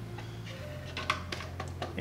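A few light clicks and taps of hands handling a crimped wire and plastic parts: the wire is routed through a hole in a 3D-printed enclosure and the power switch is picked up. They start about half a second in, over a low steady hum.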